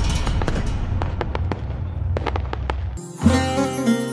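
Logo-intro sound effect: a low rumble fading away under scattered crackling clicks, then about three seconds in a short plucked-string music sting begins.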